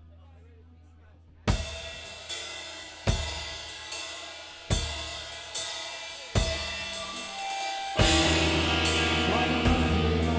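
Low amplifier hum, then about a second and a half in a heavy metal band starts the song with evenly spaced accents a little more than once a second: drum and cymbal hits together with ringing distorted guitar and bass chords. Near the end the full band comes in playing continuously.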